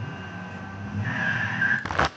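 A car scene from a film soundtrack playing on a television: engine rumble with a high tyre squeal about a second in. A sharp knock comes just before the end.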